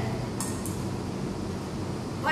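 A steady low mechanical hum fills the kitchen, with a couple of light metallic clicks about half a second in as stainless steel prep bowls are handled.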